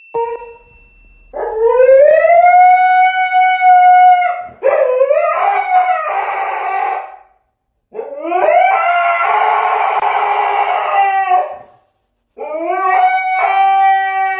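Husky howling: four long howls, each rising at the start and then held steady, with short breaks between them.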